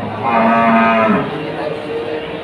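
A cow moos once: a single steady call about a second long that drops in pitch as it ends.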